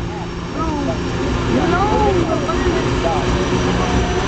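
Twin-turbocharged diesel engine of a limited pro stock pulling tractor running at the starting line as it is brought up to speed, with a steady high turbo whistle over the drone, growing louder about a second in. Crowd voices can be heard over it.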